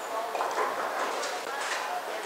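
Bowling-alley background: indistinct voices with a few light knocks and clicks.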